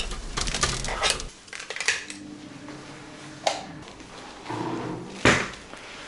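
Metal clicks and rattles of keys and a lever door handle as a room door is unlocked and opened, mostly in the first two seconds, then a single louder knock about five seconds in.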